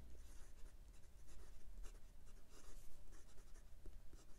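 A number six steel calligraphy nib on a MaJohn T5 fountain pen writing on 90 gsm Clairefontaine paper: a faint, uneven run of short pen strokes as a word is written.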